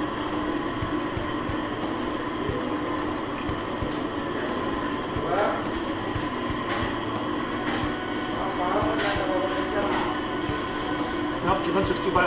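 Steady humming room noise of a restaurant, with faint voices in the background and scattered light clicks.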